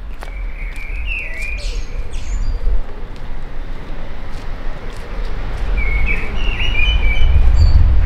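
Songbirds chirping in two short spells, about a second in and again near the end, over a steady low rumble that grows louder toward the end.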